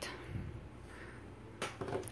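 Quiet room with faint handling of Play-Doh and plastic toy cookware, and a short knock near the end.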